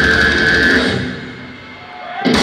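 Death metal band playing live through a PA: drums and distorted guitars under a high, held note, then the music breaks off about a second in and rings away into a short lull.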